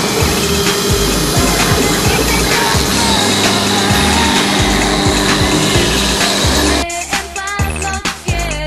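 Background music with a steady bass beat laid over the steady whine and hiss of a CNC router spindle cutting sheet stock. About seven seconds in, the machine noise cuts off suddenly, leaving only the music.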